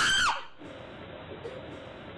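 A high-pitched scream about half a second long at the very start, its pitch rising and then falling. A low steady hiss follows.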